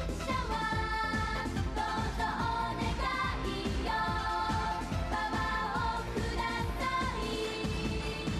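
A woman singing a Japanese stage-musical pop song over a band backing with a steady beat.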